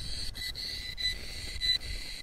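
Handheld RF detector turning nearby cell-phone and tower signals into sound: a high, thin steady whine with a few brief dropouts, over low wind rumble on the microphone.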